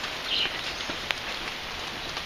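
Steady outdoor hiss with a few faint clicks and a brief high chirp about half a second in.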